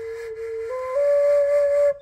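Native American flute from a flute-making kit played to test its track: one breathy tone that steps up twice to a higher note, getting louder, then stops. The tone still carries an airy, wispy hiss that the maker puts down to the track and an unsquared back hole still needing work.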